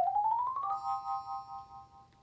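Short musical outro jingle: a quick run of notes climbing in pitch, ending on a held three-note chord that fades away.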